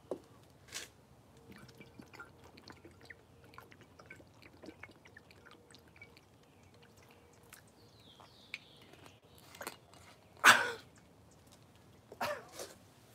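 Drinking from a large glass bottle: small swallowing and mouth clicks, then one loud, short burst of breath about ten and a half seconds in.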